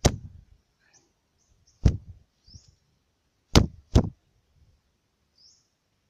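Spotted dove held in the hand beating its wings: four sharp flapping hits, the last two in quick succession.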